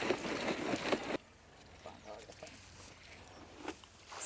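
Rinse water pouring and splashing from a bucket into the plastic tank of a Stihl motorised mist blower, cutting off abruptly about a second in. After that it is quiet apart from faint handling sounds and a sharp click near the end.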